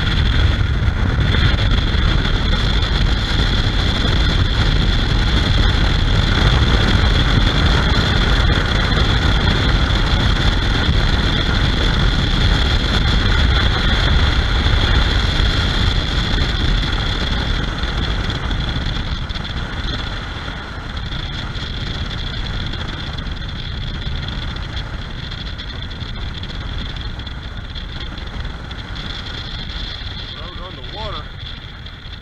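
Motorcycle riding at road speed: wind buffeting the camera's microphone over the bike's steady engine and road noise. It gets quieter about two-thirds of the way through as the bike eases off.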